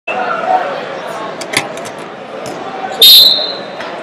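A referee's whistle blast about three quarters of the way in, a short shrill tone that starts the wrestling bout. Under it, the din of a busy tournament hall: background voices and a few sharp knocks.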